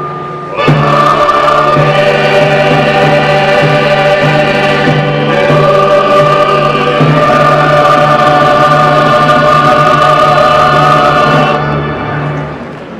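Church choir singing a hymn over a steady held low note. A new phrase begins about half a second in, and the music fades away near the end.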